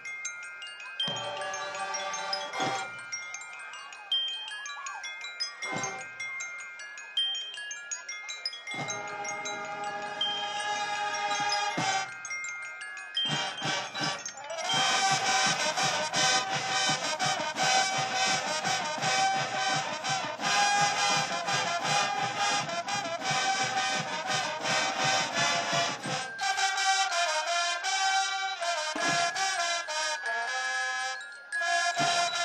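Marching band music: marching mallet percussion (bells) plays ringing, chime-like phrases for the first dozen seconds or so, then the brass comes in loud with the full band at about 14 seconds, easing back near the end.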